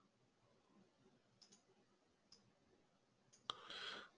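Faint computer mouse clicks scattered over near silence, with a louder click near the end followed by a short soft hiss.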